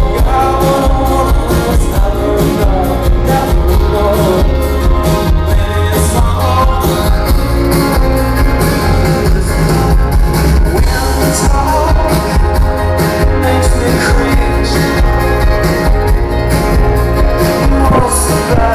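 Live rock band playing a song: a male singer with an acoustic guitar over a drum kit, recorded loud from the audience with heavy bass.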